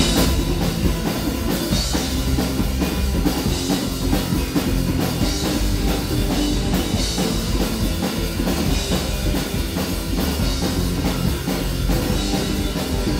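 Live rock band playing loudly: a drum kit driving a steady beat under electric guitar and bass.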